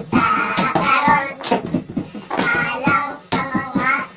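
Lively, high-pitched young voices over music playing underneath.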